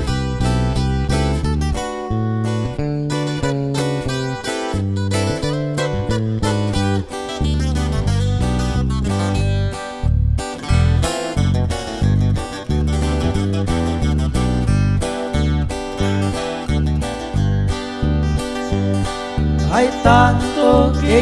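Instrumental band music without vocals: plucked and strummed acoustic guitars playing a melody over a bass line that steps from note to note.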